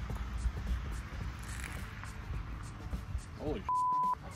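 Outdoor wind and field noise on the microphone, then a man exclaims "Holy" near the end and a steady, high censor bleep lasting under half a second covers the swear word that follows, cutting off abruptly.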